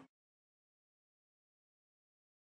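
Total silence: the sound track drops out completely, with no room tone.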